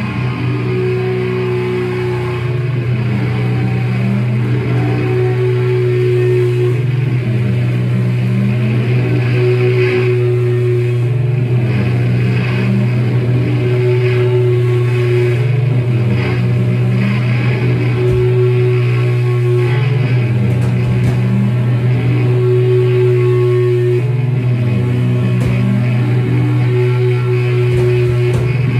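A live rock band playing loudly: a low note held as a steady drone under a short, higher guitar figure that repeats about every two seconds.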